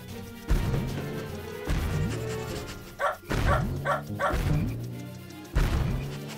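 A series of cartoon bounce sound effects, about six thuds each with a short falling twang, landing at uneven intervals over background music. In the middle come four short, high yelps in quick succession.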